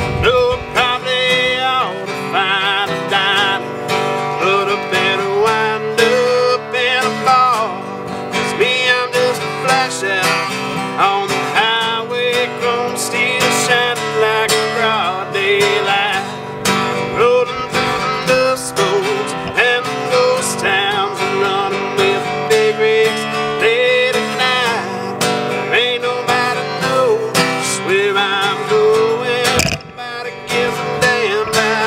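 Gibson acoustic guitar playing an instrumental break in a country song, strummed chords with a melody line.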